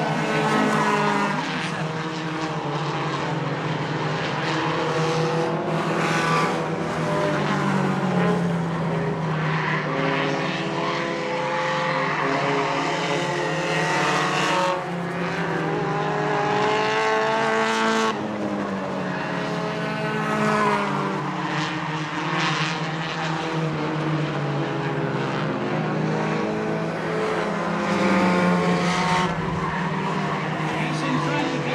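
Several stock car engines running hard on a short oval. Their pitches overlap and rise and fall in repeated sweeps as the cars accelerate and ease off.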